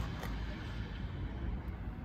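Low, steady background rumble with no distinct event in it.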